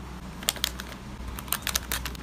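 Light, sharp clicks and taps of a paper card being handled and set into a cardboard mailer box. There are two clicks about half a second in, then a quick run of four or five near the end.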